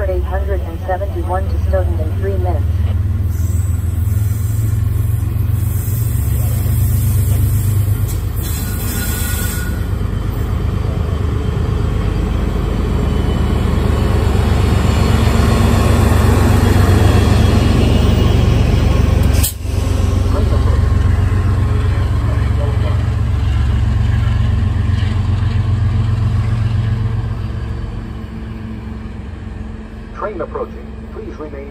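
An MBTA HSP-46 diesel locomotive pushing a departing commuter train of bilevel coaches past at close range: a loud, deep engine and rail rumble that builds as the locomotive goes by, peaks in the middle and fades near the end. There is a brief dropout about two-thirds through.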